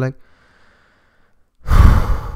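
A man's loud, breathy sigh blown out close to the microphone, starting about a second and a half in and trailing off.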